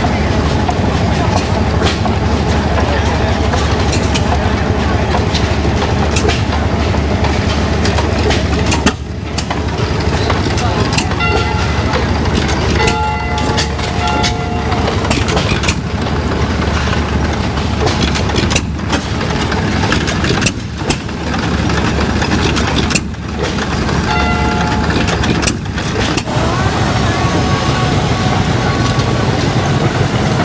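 Antique stationary gas engines and other show machinery running together in a continuous clattering din. A whistle with several tones at once sounds a few times, held for a second or two each time, in the middle and again later on.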